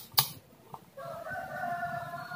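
A sharp click from a digital multimeter's rotary range selector being turned, then a rooster crowing in the background from about halfway through, one long call.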